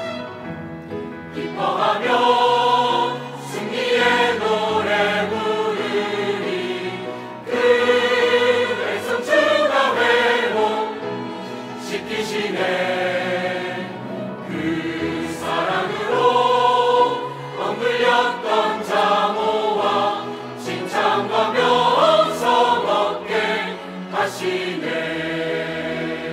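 Mixed choir of men's and women's voices singing a Korean hymn in full harmony, in phrases a few seconds long that swell and ease.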